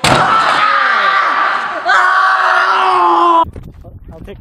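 A crash as a man is thrown onto a galvanised metal trash can, followed by two long loud screams, the second slowly falling in pitch, cut off suddenly about three and a half seconds in.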